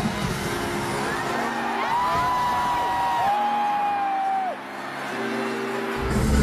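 Live pop music played over a stadium sound system, heard with crowd noise and cheering. Two long high notes are held in the middle, and the bass and beat drop out in the second half.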